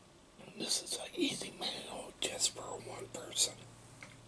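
A man whispering close to the microphone in short, breathy phrases, with sharp hissing sounds on some of them.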